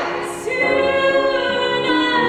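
A woman singing a musical-theatre song in full voice. She takes a quick breath about a quarter second in, then sustains a new note.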